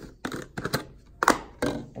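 Screw-on plastic lid being twisted off a clear plastic jar, giving a run of about six short, sharp plastic clicks and knocks.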